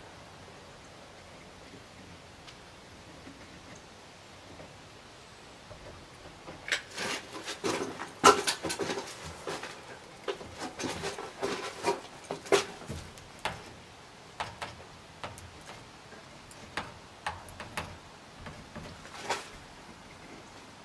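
A caulking gun being worked to dab caulk over the nail heads of a window's nailing flange. After about six quiet seconds come irregular clicks and knocks of the gun and of handling against the window, loudest about eight seconds in.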